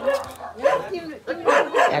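A dog barking a few short barks among people's voices.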